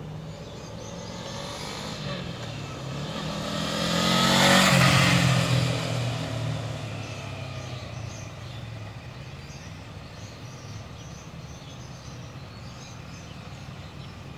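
Motorcycle riding past close by: its engine grows louder and peaks about four to five seconds in, the pitch dropping as it goes by, then fades as it rides away down the street.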